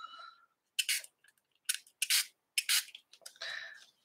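A handful of short, soft rustles and scuffs of a hand handling a sheet of wet mixed-media paper on a cutting mat, with a slightly longer rustle near the end.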